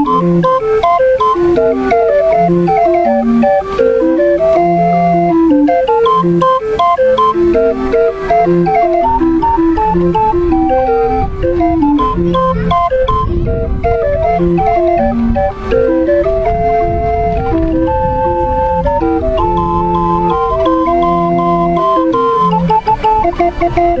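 Small hand-cranked box organ with wooden pipes playing a tune from punched paper music: a melody of held notes over short, repeated bass notes. A low rumble runs under the music around the middle.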